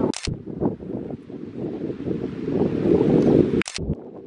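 Wind buffeting the microphone: a loud, uneven rumble that rises and falls. Short sharp clicks sound just after the start and again near the end.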